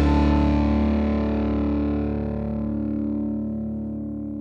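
The final chord of a rock song played on distorted electric guitar, ringing out and slowly fading away.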